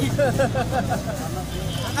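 Steady low rumble of city street traffic, with a man's voice speaking over it in the first second.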